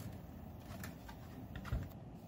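A few faint, light clicks of hands handling the plastic food chopper on the bench, with no motor running.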